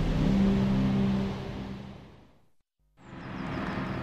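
A steady engine drone fades out over about two seconds; after a short silence, a vintage car's engine and tyres build up as it drives past.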